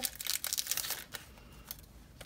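Packaging being opened by hand to get at a set of recipe insert cards: a burst of crinkling and crackling in about the first second, then fainter rustling.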